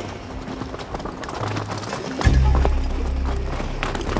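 Horse hooves clip-clopping in an uneven run of knocks over orchestral documentary music. A deep low note swells in a little over two seconds in.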